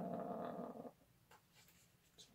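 A man's drawn-out hesitation "uhh", held steady for just under a second, followed by a few faint clicks.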